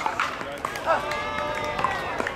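Several people talking, with one voice holding a long drawn-out call through the middle, over scattered sharp pops of pickleball paddles hitting plastic balls on nearby courts.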